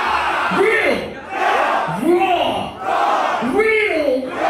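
Packed concert crowd yelling together, a loud rising-and-falling shout repeated about every second and a half.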